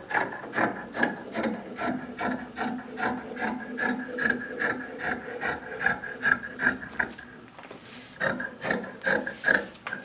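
Metal fabric shears snipping through two layers of fabric laid on a table, a steady run of cuts about three a second. The cutting pauses for about a second some seven seconds in, then resumes.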